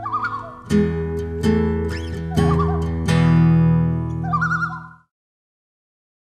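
Acoustic guitar music with strummed chords under a wavering high melody, cutting off about five seconds in.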